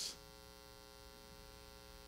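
Faint, steady electrical mains hum: a buzz of many even tones that holds unchanged.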